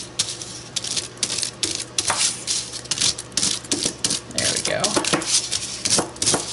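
Crumpled aluminium foil crinkling and crackling as it is handled and pressed flat by hand, a fast, irregular run of sharp crackles.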